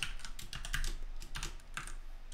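Typing on a computer keyboard: an irregular run of keystrokes, several clicks a second.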